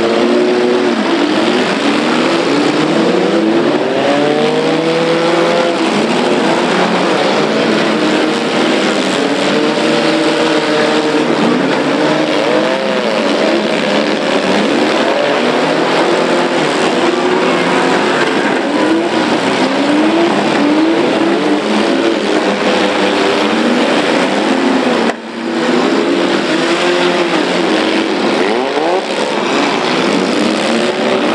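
Many demolition-derby cars' engines running and revving together, their pitches rising and falling and overlapping as the cars accelerate and ram one another. The sound dips briefly near the end.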